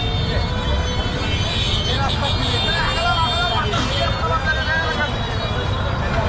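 Busy street ambience: several people's voices in a crowd, over a steady low rumble of traffic.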